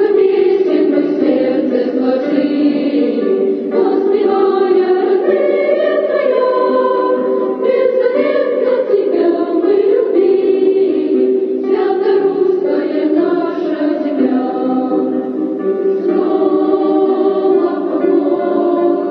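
Choral music: a choir singing sustained, slowly moving lines.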